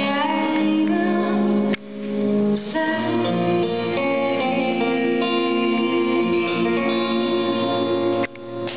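Live band playing a slow song led by guitar, with a woman singing into a microphone. About two seconds in the sound drops out suddenly and swells back.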